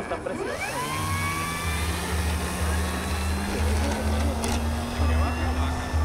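Brushless electric motor and propeller of an E-flite Piper J-3 Cub 25e RC model plane spooling up. The whine rises quickly in the first second, then holds high and steady, creeping slightly higher as it runs.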